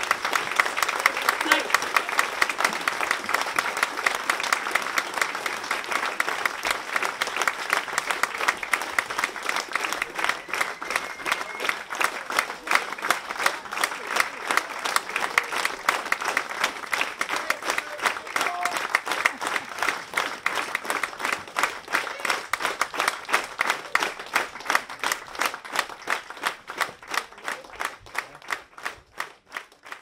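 Audience applauding with voices calling out in the crowd. Near the end the clapping thins to separate claps and fades away.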